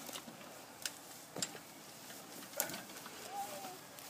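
A handful of scattered sharp snaps and knocks as a freshly cut pine Christmas tree is heaved onto a red metal cart, its branches and trunk knocking against it; a brief voice sound near the end.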